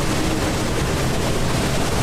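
Steady, even rushing rumble with no distinct events, the ambient sound bed behind a sea-monster scene.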